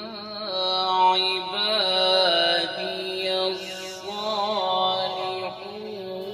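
A man's voice chanting a melodic religious recitation through a microphone and PA, in long phrases with wavering, ornamented notes over a steady low drone.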